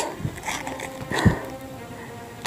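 Footsteps on a rocky, stony trail, two heavier steps about a second apart.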